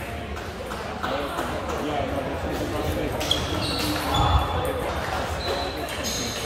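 Table tennis ball clicking off bats and table, with indistinct voices in the background.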